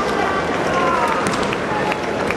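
Kendo fencers' kiai: long, drawn-out, high-pitched yells that slide in pitch, heard over the steady background noise of the hall.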